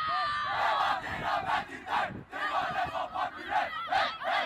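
A football team shouting and cheering together in a huddle, many young male voices at once.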